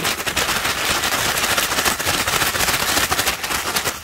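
Brown paper bag holding dried green onion flower heads, shaken hard: a fast, continuous crackling rustle of paper and dry seed heads, done to knock the seeds loose from the flower heads.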